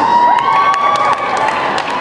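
Audience cheering and scattered clapping, with one long high-pitched cry held over the noise until about a second in.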